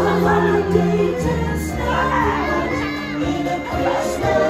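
Parade music playing over a float's loudspeakers, with crowd voices and children shouting over it.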